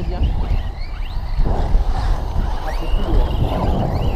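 Wind buffeting the microphone with a heavy, uneven rumble. Over it comes the faint, distant whine of electric RC cars' brushless motors, rising and falling in pitch as they accelerate and brake around the track.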